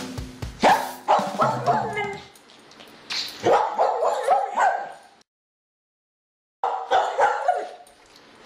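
A dog barking in three runs of quick barks, with a silent gap of about a second and a half before the last run. The tail of drum-kit music is heard under the first second.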